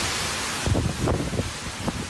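Hurricane wind and heavy rain lashing trees, with gusts buffeting the microphone; it starts suddenly and runs as a loud, even rush.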